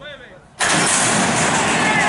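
Racehorses breaking from a metal starting gate: a sudden loud rush of noise begins about half a second in and holds steady as the field leaves the gate.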